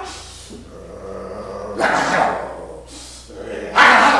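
A man imitating a dog with short, rough barks: a moderate one about two seconds in and a louder one near the end.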